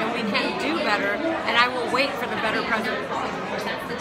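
Speech and crowd chatter in a large, busy hall, several voices talking at once.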